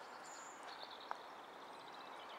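Faint birdsong over a quiet outdoor background: a brief high whistle, then a run of thin, rapidly repeated high chirps, with one small click about halfway through.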